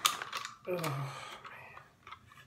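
Plastic toy packaging and a die-cast toy hauler being handled: a sharp plastic clatter at the very start, then clicking and rustling that fade out.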